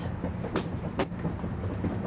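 Hydraulic slide-out room of a motorhome moving, a steady low hum of the hydraulic system with two sharp clicks about half a second and a second in.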